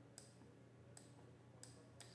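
Near-silent room tone with three faint, sharp clicks spread across two seconds, from a stylus tapping a pen tablet as digits are handwritten.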